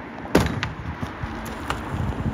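A car striking a child-sized mannequin standing in the road: one sharp, loud impact about a third of a second in, then a few smaller knocks as the car rolls on over the road.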